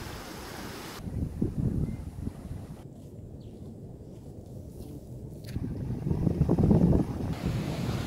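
Wind buffeting the microphone over sea waves washing among shoreline rocks, the sound changing abruptly a few times.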